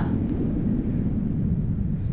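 Steady low rumbling noise, with a faint tick about a third of a second in.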